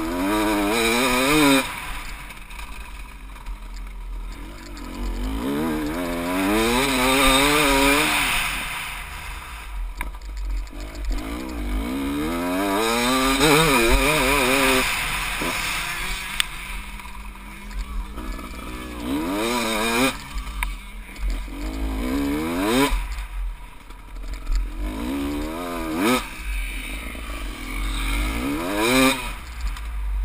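Off-road motorcycle engine heard from the rider's helmet camera, revving up and easing off again and again as the throttle is worked, with about six climbs in pitch. Wind rumbles on the microphone underneath.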